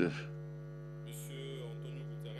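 Steady low electrical hum from the sound system, with fainter higher overtones, holding level while no one speaks. A short spoken "uh" comes at the very start.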